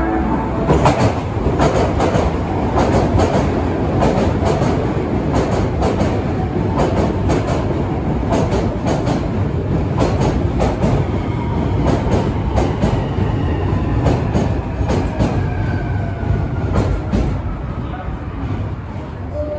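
Osaka Metro Midosuji Line train running into the station close by, its wheels clacking over rail joints in a long string of sharp clicks. A thin whine falls in pitch over the last few seconds as the train slows.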